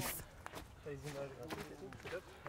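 A quiet stretch with a faint, brief voice a little after a second in.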